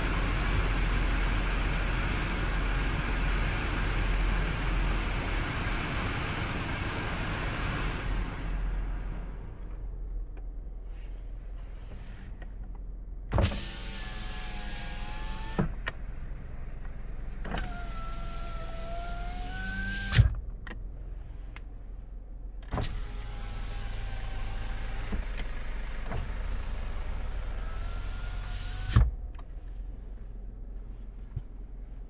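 Kia Morning's power window motor whining in three separate runs, its pitch wavering as the glass travels, with a sharp clunk as the glass stops. Before that, for the first eight seconds or so, the cabin's heater blower fan runs loudly and is then switched down.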